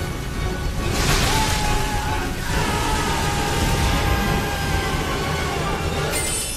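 Dramatic film score with sustained held notes, and a loud rushing swell of sound rising about a second in.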